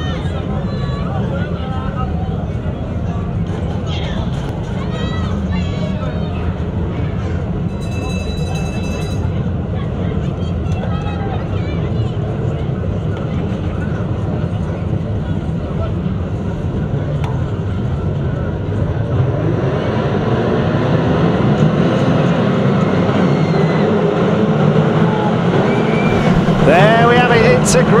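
Many saloon stock car engines running together on the grid, idling and blipping. They grow louder from about two-thirds of the way through, and the engine notes rise steeply near the end as the cars rev up and pull away at the start.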